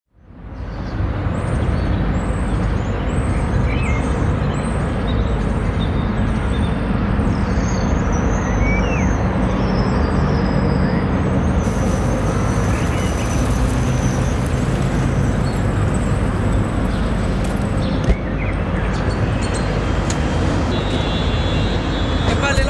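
Steady outdoor traffic and urban background rumble, fading in at the start, with a brief knock about eighteen seconds in.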